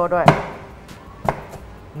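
A chef's knife slicing through a sweet potato onto a wooden cutting board: a sharp knock just after the start, then two or three fainter knocks about a second in.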